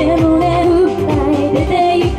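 Upbeat J-pop song played over a PA loudspeaker, with female vocals singing the melody over a steady drum beat.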